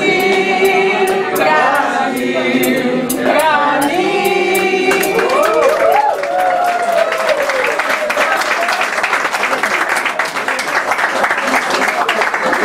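A woman singing unaccompanied, with other voices joining in and sharp claps along. About halfway through the song ends and gives way to the room applauding.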